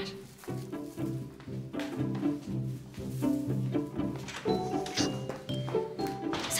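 Background music: a string score of short, repeated low notes moving step by step, with a few brief high tones joining about four to five seconds in.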